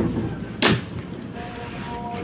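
Two kittens chewing and tearing at a whole cooked fish on a plastic plate, with one sharp crunch about two-thirds of a second in.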